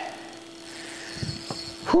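Boat motor running with a steady low hum, under a short voice sound at the start and a few soft knocks about halfway through.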